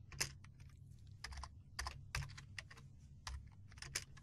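Faint typing on a computer keyboard: an irregular run of separate key clicks.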